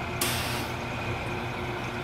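Vacuum Atmospheres Nexus glove box antechamber refilling with gas: a half-second burst of hiss starting about a quarter second in, over the steady hum of the glove box's machinery.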